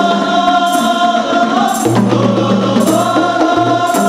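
Rebana klasik ensemble playing a qasidah: voices sing a held melody over hand-struck rebana frame drums, with a jingle shake about once a second.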